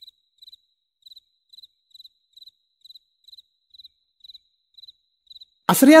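Cricket chirping steadily, short high chirps about twice a second. Near the end a loud, echoing voice cuts in.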